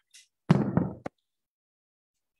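A dull knock about half a second in, followed by a short sharp click just after it.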